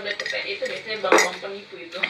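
A drinking glass clinking once, sharply, about a second in, as it is handled.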